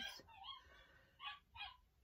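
Dogs barking faintly: a short rising-and-falling yelp early on, then two quick barks near the end. The dogs are worked up, which the owner puts down to the mail carrier probably arriving.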